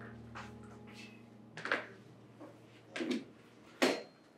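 A door opening and a person walking in: a few soft knocks and thuds, the loudest just before the end, over faint room tone.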